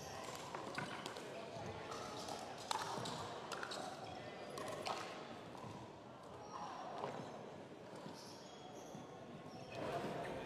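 Indoor sports hall ambience: distant voices, with occasional sharp pops of pickleball paddles striking balls on other courts.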